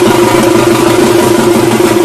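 Loud Faruwahi folk-band music: fast drumming under a steady droning tone.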